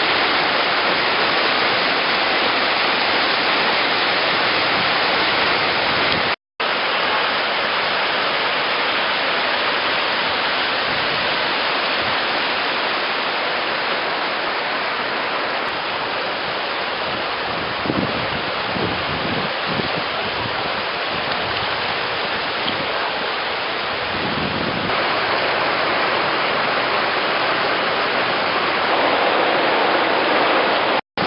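Shallow river water running over limestone ledges and small rapids: a steady rush of water. The sound drops out for a moment about six seconds in.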